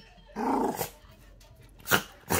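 Maltese dog snarling angrily in two short outbursts, the first about half a second in and a sharper, louder one near the end. It is reacting to being sprayed with allergy medicine.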